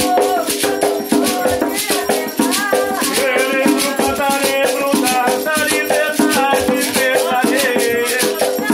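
A sung Umbanda ponto for the Pretos Velhos, with an atabaque hand drum played with bare hands and a shaker rattle marking a fast, steady rhythm throughout.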